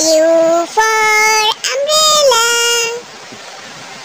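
A child's sing-song voice calling out the letter and its word, most likely "U for umbrella", in four drawn-out syllables held on steady notes.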